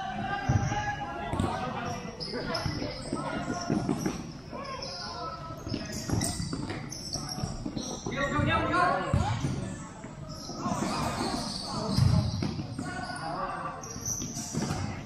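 A futsal ball being kicked and bouncing on a plastic sport-tile court in a large echoing hall, with players' indistinct shouts and calls throughout. One louder thud of the ball near the end.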